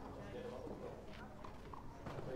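Faint, indistinct chatter of spectators at a tennis court, with a couple of soft knocks in the middle.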